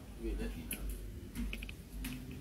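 Scattered sharp clicks, with a quick cluster of three about one and a half seconds in, over a low rumble.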